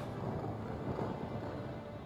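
Low, steady background music drone, easing off slightly in the second half.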